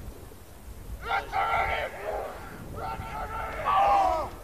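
Players shouting on the field before a kickoff: two drawn-out yells, one starting about a second in and a louder one near the end, over low wind rumble on the microphone.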